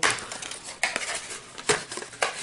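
A cardboard product box being handled and a cosmetic cream jar taken out of it. There is rustling, with two sharp clicks or knocks, one about a second in and a louder one near the end.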